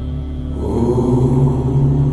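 A man's steady low hum with closed lips: the humming-bee exhale of bhramari pranayama. It swells about half a second in, over soft ambient background music.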